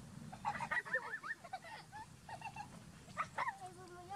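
A baby macaque calling in short, high-pitched cries that waver up and down, a quick run of them about half a second in and another burst near the end.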